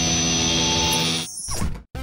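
Cartoon sound effect of a guitar amplifier giving out a loud, steady, distorted electric blare, held and then cut off suddenly just over a second in.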